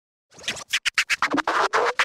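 Intro music opening with DJ-style record scratching: rapid, choppy scratch strokes, several a second, starting a moment in, with a short rising pitch glide near the end.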